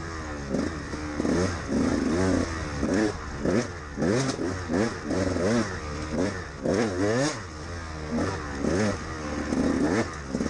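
A KTM 200XC-W's single-cylinder two-stroke engine revving up and down over and over, its pitch rising and falling about once a second as the throttle is worked through tight woods trail.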